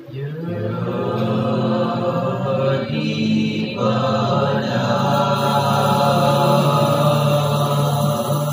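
A group of boys singing a chant together into microphones, with long held notes. It starts suddenly, dips briefly about three seconds in, then carries on.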